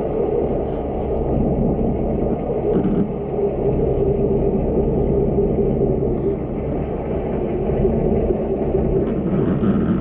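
Steady low rumble recorded underwater, with a faint hum of a few steady tones running through it. This is typical of a boat engine running nearby, heard through the water.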